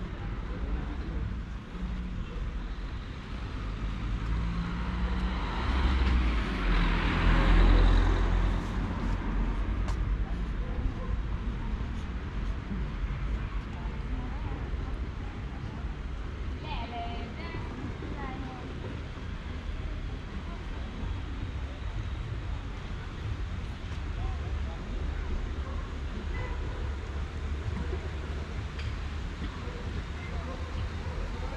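Street ambience of light road traffic: a car passing close by, swelling and fading, loudest about seven seconds in, over a steady low rumble, with people's voices in the background.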